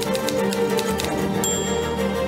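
Typewriter keystroke sound effect, a quick irregular run of key clacks, over background music.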